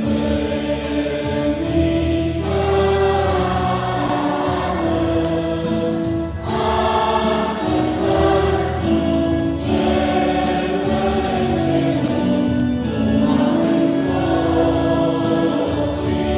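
A choir singing a hymn in long held notes, with the sound of a large church around it.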